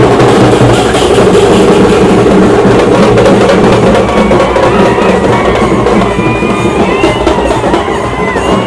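Loud, percussion-heavy music with dense drumming, starting suddenly.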